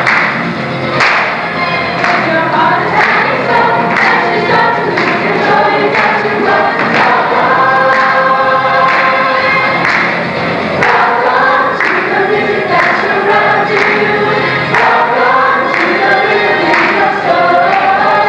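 Stage musical ensemble singing together as a chorus over musical accompaniment with a steady beat.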